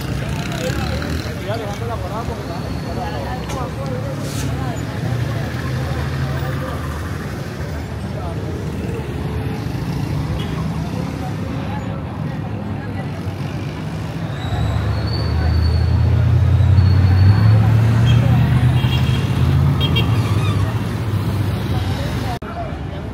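Busy city street traffic: cars and motorcycles running past, with passers-by talking under it. About two-thirds of the way through, a deeper engine rumble grows louder for several seconds as a vehicle passes close.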